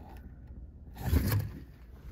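A brief scrape or rustle about a second in, over a steady low rumble: handling noise as the handheld camera is swung away from the window.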